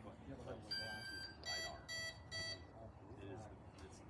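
An electronic beeper sounds one held tone, then three short, quick beeps, over faint voices.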